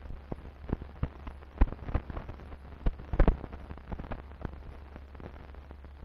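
Crackle and irregular pops of an old optical film soundtrack over a low steady hum, with no other sound.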